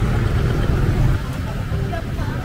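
City street traffic noise: a steady low rumble of passing motorbikes and cars, with voices in the background.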